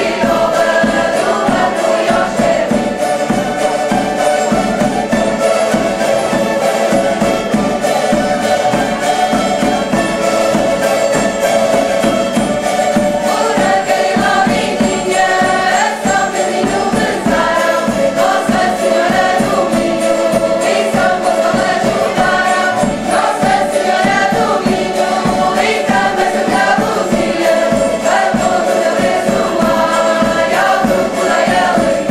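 A group of women and children singing together, accompanied by strummed cavaquinhos (small Portuguese four-string guitars), in a steady, lively folk song.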